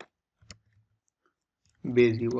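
Two sharp computer-keyboard clicks about half a second apart, then near quiet, as code is typed; a man's voice starts near the end.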